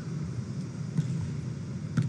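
Steady low background noise of an indoor volleyball arena with spectators, with no distinct events apart from a short sharp sound at the very end.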